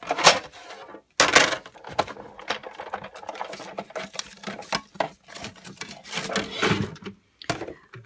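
Sizzix Big Shot die-cutting machine being hand-cranked, pushing the cutting plates and a Bigz steel-rule die through its rollers to cut black cardstock backed with aluminum foil tape. It makes an irregular run of clicks and creaks, loudest about a second in.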